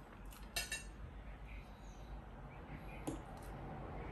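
A metal fork clinking on a ceramic plate while fish is picked apart: two quick clinks about half a second in and another about three seconds in.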